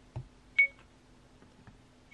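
One short, high electronic beep about half a second in: the Acumen XR10 rearview-mirror dashcam's touchscreen key tone as a finger taps its menu.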